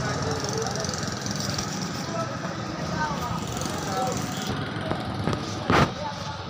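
Faint, indistinct voices over steady background noise, with one short, loud knock near the end.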